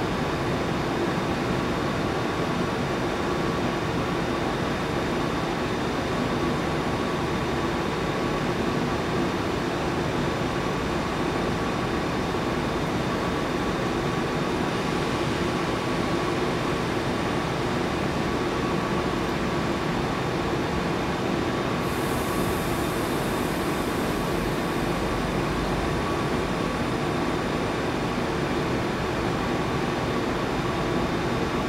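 Double-deck passenger train rolling slowly away over the station tracks: a steady rumble and hum with a few constant tones, and a brief high hiss about two-thirds of the way through.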